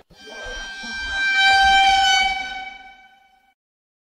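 A sound effect edited in over a caption: one long, steady pitched tone, horn-like in its full set of overtones. It swells up for about two seconds and fades out shortly before the end.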